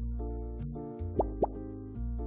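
Background music of steady held notes, with two quick rising plop sound effects a little past the middle, a quarter-second apart.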